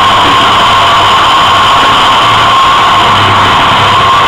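Live rock band playing loud and distorted, the recording overloaded into a dense, steady wall of noise with one held tone above it.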